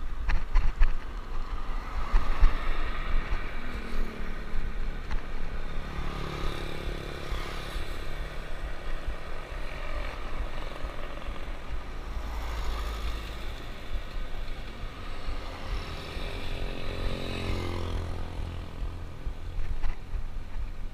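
Wind rumbling on an action camera's microphone during a bicycle ride. Motor vehicle engines go by twice, a few seconds in and again near the end, their pitch rising and falling.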